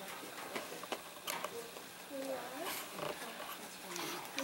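Faint, distant voices talking in a large room, with a few short light clicks and knocks.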